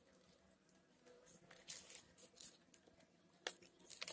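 Faint rustling and crinkling of a paper sleeve and string as they are handled and tied around a grafted stem by hand, a few brief rustles against near silence.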